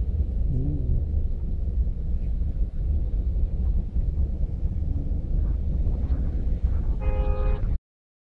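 Low, steady rumble of road traffic and the car's own running, heard from inside the car cabin. A car horn sounds once near the end, lasting under a second.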